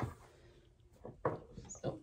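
A few light clicks and knocks of ½-inch PVC pipe and fittings being handled on a wooden tabletop: one at the very start, then several short ones from about a second in.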